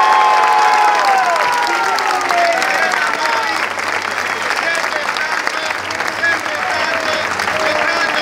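Crowd applauding and cheering, with voices shouting over the clapping, the shouts held longest in the first couple of seconds.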